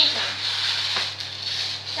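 Electric fan oven running with its door open: a steady low hum under an even airy hiss, with one faint click about a second in.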